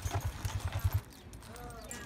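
Hooves of a team of Percheron draft horses clopping as they walk pulling a wagon, for about the first second, then fading to quiet.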